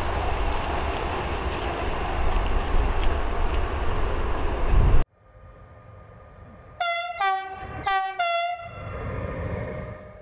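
MÁV class 628 (M62) diesel locomotive running as it approaches, a heavy rumble that cuts off suddenly about five seconds in. After a short pause, a train horn gives three short blasts, the last two close together.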